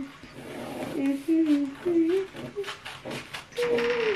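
A person humming a short tune in a string of held notes that step up and down in pitch, with the highest note near the end sliding back down.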